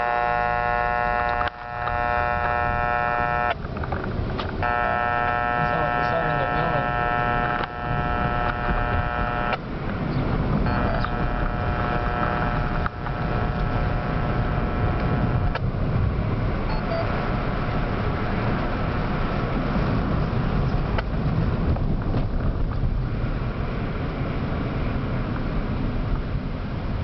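Three long steady electronic tones, each about five seconds with a short gap between, switching on and off sharply, over low car rumble; after the third tone only the car's road and engine noise is heard as it drives.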